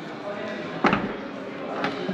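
The glass tailgate of a Toyota Aygo X hatchback being pushed shut by hand: one sharp knock about a second in as it latches, then a faint click near the end.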